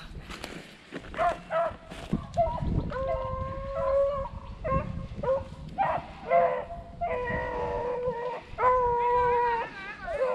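Beagles baying on the chase, a run of long drawn-out howls from about three seconds in, the pack running a rabbit. Dry brush crackles underfoot in the first couple of seconds.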